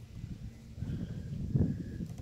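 Wind buffeting the microphone outdoors: a low, uneven rumble that swells to its loudest about a second and a half in.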